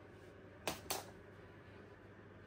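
Two quick, sharp clicks about a fifth of a second apart, less than a second in, over a quiet room background.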